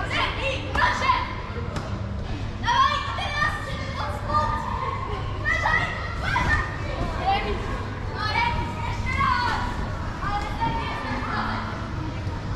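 Many children shouting, calling and playing in a large hall, their voices echoing and coming and going, over a steady low hum.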